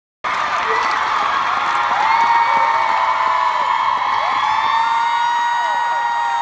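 Large audience cheering and screaming, with many long, high held shrieks over the steady roar of the crowd.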